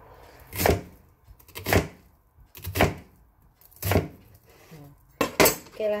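Knife slicing through an onion onto a plastic cutting board, one cut about every second for four cuts, then two quick cuts near the end.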